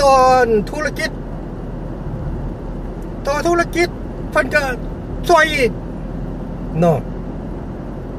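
Steady low road and engine noise inside a moving car's cabin, heard under a man's speech and alone in the gaps between his phrases.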